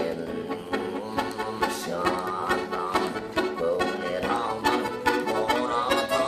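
Bayan (chromatic button accordion) playing an instrumental passage: a quick run of melody notes over sustained chords, with no voice.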